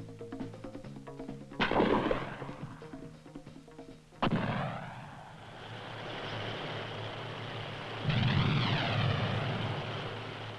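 Gunfire in a field exercise over fading background music: a sharp, loud shot about one and a half seconds in and a heavier blast about four seconds in, each trailing off in a long rumble. From about eight seconds a louder sustained rushing noise with a wavering high whine takes over.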